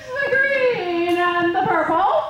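A woman's voice singing a short sung phrase into a handheld microphone, amplified through a PA, with a long held note in the middle.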